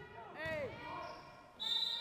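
Basketball shoes squeaking on the hall floor in short gliding squeals during play, then a referee's whistle blowing a loud, steady, high-pitched blast about one and a half seconds in to stop play for a foul.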